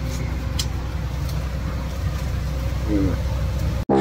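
Steady low rumble of a moving sightseeing bus: engine and road noise with a few faint clicks. It cuts off abruptly just before the end, when music begins.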